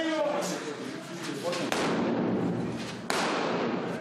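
A man shouts briefly, then two sudden bangs about a second and a half apart from the mock-combat firing, each ringing on in the bare concrete rooms.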